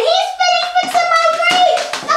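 A girl singing a high melody in long, held notes, with a few sharp taps or claps among them.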